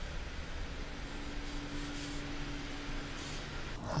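Steady low hiss of room noise with a faint hum in the middle and a few soft rustles. A man starts singing right at the end.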